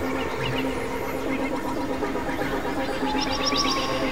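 Experimental electronic synthesizer music: steady low droning tones under a dense, noisy texture, with clusters of short high chirping blips, the brightest near the end.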